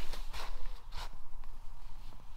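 Three short rustling noises within the first second, from someone moving about inside a tent among its fabric walls and bedding.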